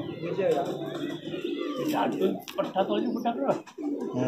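Domestic high flyer pigeons cooing, with people talking in the background.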